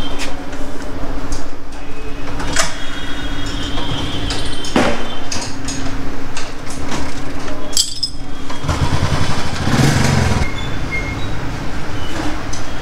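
A steady motor hum over workshop and street noise, broken by a few sharp clinks or knocks and a louder rumble near the end.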